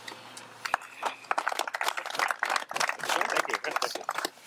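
A small crowd clapping, starting about a second in and running as a dense patter of irregular claps.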